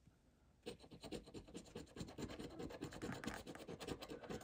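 A large coin scraping the coating off a scratch-off lottery ticket in quick, repeated strokes, starting a little over half a second in.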